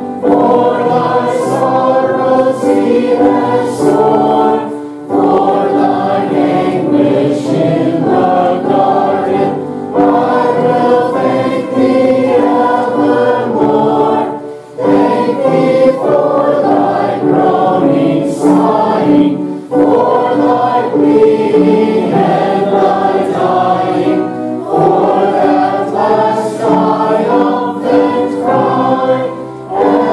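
A church congregation singing a hymn together, in phrases of about five seconds separated by short breaks.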